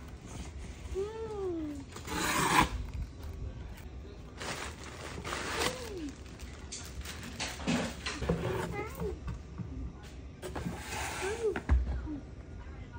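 Plastic packaging crinkling and a cardboard shipping box rustling as items are pulled out of it, in several spells. Between them come a few short vocal sounds from a child.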